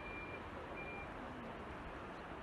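Faint steady outdoor background noise with a thin high-pitched beep heard twice in the first half.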